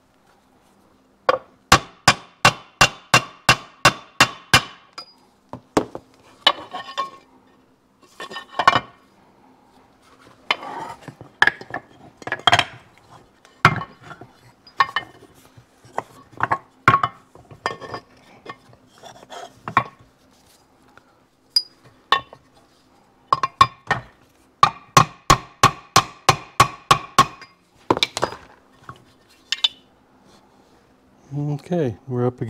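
Hammer tapping a metal bearing driver to drive a needle bearing into an aluminium engine crankcase, seating it against its retaining clip. There are two runs of sharp, ringing metallic taps, about three a second, with scattered knocks and clinks between them as the case is handled.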